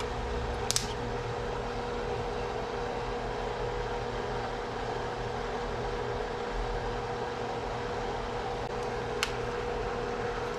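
Steady fan-like hum with a faint steady whine, and two light clicks, one about a second in and one near the end.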